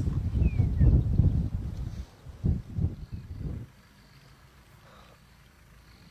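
A leopard's low growl over a warthog carcass it is feeding on, in rough surges, breaking off after about three and a half seconds.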